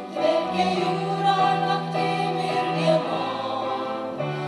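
A women's vocal ensemble singing in harmony, accompanied by piano.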